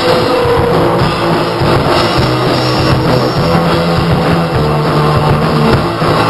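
Three-piece punk rock band playing live, with electric guitar, electric bass and drum kit going at full volume. It is an instrumental stretch with no singing.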